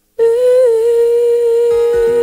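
A woman's voice comes in out of silence and holds one long sung note with a slight waver in pitch. Near the end, a strummed acoustic guitar chord comes in beneath it.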